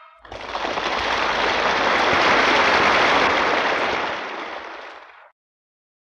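Audience applauding after a song on a mono vinyl LP recording, swelling and then fading out about five seconds in.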